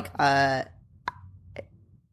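A woman's voice says a couple of words and trails off into a pause. Two short, faint clicks sound during the pause, about a second and a second and a half in.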